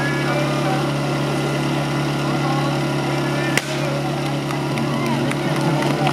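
Portable fire pump engine idling steadily, with one sharp crack about three and a half seconds in, the signal that starts the team's run.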